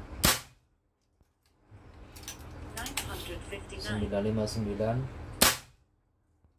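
Two shots from a PCP air rifle, a Bengal X-Trabig tactical firing 17-grain BL slugs. Each is a single sharp crack, and they come about five seconds apart, one just after the start and one near the end. They are velocity-test shots over a chronograph that reads about 960.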